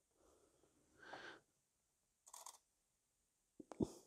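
Near silence with faint handling sounds, a short hiss about two and a half seconds in, and a sharp click near the end.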